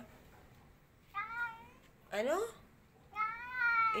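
White domestic cat meowing twice at its owner, a short meow about a second in and a longer drawn-out one near the end: hungry and asking for food.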